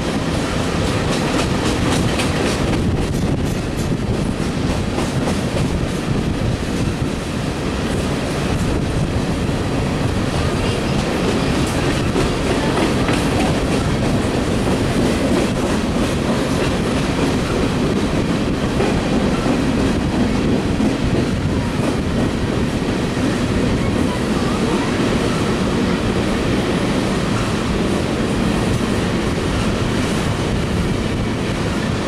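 An empty coal train's hopper cars rolling past at a steady speed: a continuous rumble of steel wheels on rail, with wheels clicking over the rail joints.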